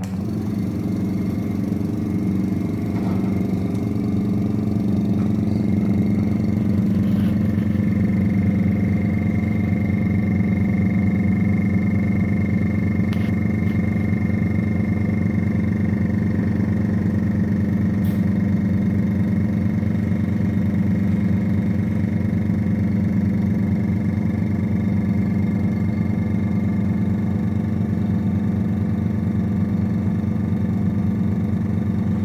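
Vacuum pump running steadily for vacuum filtration of cell culture medium, a loud even motor hum that builds a little over the first few seconds. A faint high steady whine joins about six seconds in.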